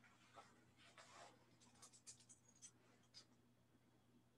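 Faint dry-erase marker strokes on a whiteboard in the first second or so, followed by a series of light clicks and taps from the marker and board.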